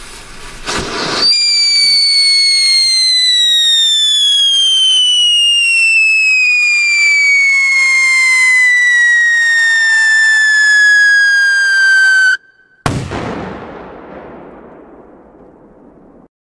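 A ground-lit whistling firework shrieks for about eleven seconds, its pitch falling slowly and steadily, then cuts off abruptly. A moment later comes a sudden loud bang that dies away over a few seconds.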